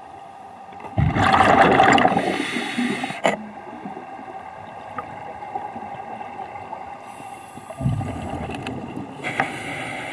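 Scuba diver breathing through a regulator underwater: a loud rush of exhaled bubbles starts about a second in and lasts about two seconds, and a second, weaker breath comes near the end, over a faint steady hum.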